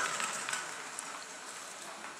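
Small rubber-band-powered toy car, with wheels made from DVD-player feet, rolling fast across a wooden parquet floor. The rolling noise fades steadily as the car moves away.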